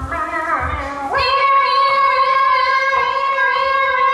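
A woman singing a show tune: a short phrase sliding downward, then from about a second in one long, high held note, with musical accompaniment underneath.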